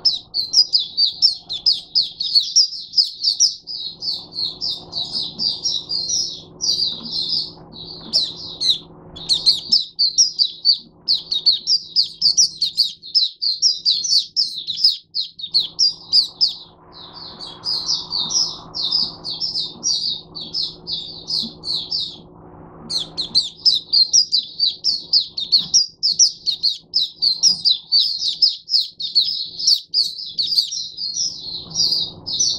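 A caged white-eye singing a fast, high twittering song in long near-unbroken phrases, breaking off briefly three times, over a faint steady low hum.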